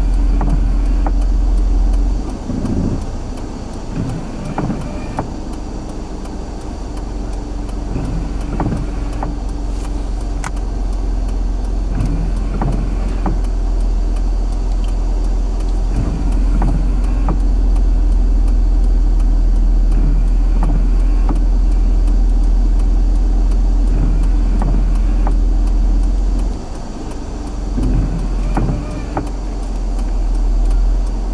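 A car's engine idling, heard from inside the cabin: a steady low hum and rumble that eases off briefly about two seconds in and again near the end.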